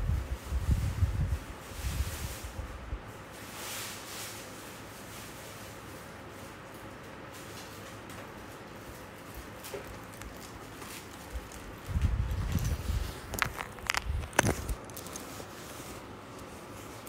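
Muffled low thumps and rustling in two bouts, in the first few seconds and again from about twelve seconds in. A few sharp clicks come near the end, with faint background hiss in between.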